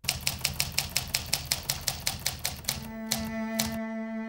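Manual typewriter's typebars striking the paper in a fast, even run of about six or seven keystrokes a second, thinning to two separate strikes near the end.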